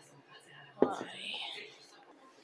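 A single sharp knock of cookware about a second in, followed by a brief, breathy whispered voice.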